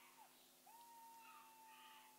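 Near silence: faint room tone with a faint, steady high-pitched tone and a low hum.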